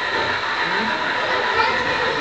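Indistinct chatter of people talking in the background over a steady hum, with no clear nearby voice.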